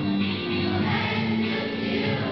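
Children's choir singing, holding sustained notes.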